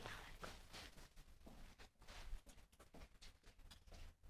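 Near silence with faint, irregular rustles and clicks: clothing brushing against the recording phone.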